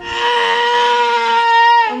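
A toddler's long, high-pitched scream held on one note for nearly two seconds, falling slightly as it ends. It is a demanding scream for his mother's water bottle.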